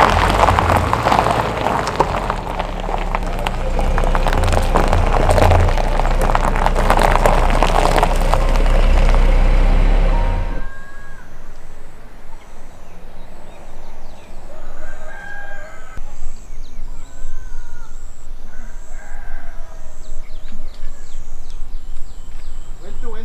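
A loud rushing noise for about the first ten seconds cuts off suddenly. In the quieter outdoor ambience that follows, a rooster crows several times and high chirping repeats.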